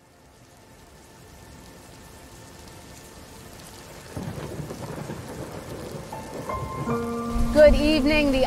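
Rain and thunder fading in from silence and growing steadily louder, with a heavier rumble of thunder about halfway through. Near the end, steady pitched tones come in over the storm.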